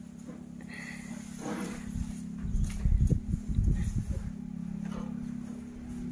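Young Asian elephant lying on the ground with its trunk on the dirt, breathing out in a cluster of low, irregular puffs between about two and four seconds in, over a steady low hum.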